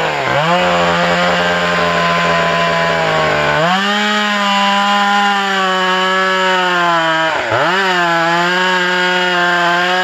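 Chainsaw cutting into the base of a large standing tree, its engine held at high revs under load. The engine note drops sharply and climbs back right at the start and again about seven and a half seconds in, and steps up slightly a little before four seconds.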